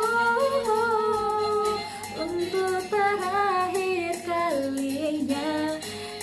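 A woman's voice singing a slow pop ballad melody without clear words, in long held notes that slide between pitches.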